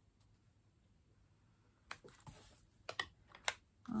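A few faint, light clicks and taps in the second half as strips of cardstock paper are handled and set down on a gridded craft mat.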